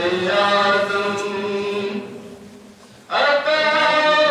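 Male voice singing a manqabat, a devotional poem in praise of a Sufi saint, unaccompanied into a microphone. A long held note fades out about two seconds in, and the singing comes back loudly about three seconds in.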